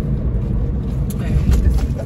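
Steady low rumble inside a car's cabin, with a few short knocks in the second half.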